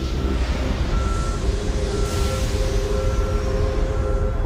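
Deep, steady vehicle-like rumble with a continuous hum, and a short, high electronic warning beep repeating about once a second, like a heavy vehicle's reversing alarm.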